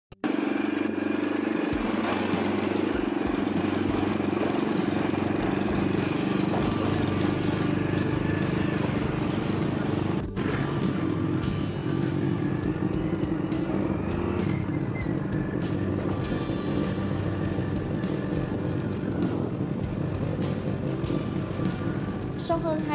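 Motorbike engine running steadily while riding, with road and wind noise.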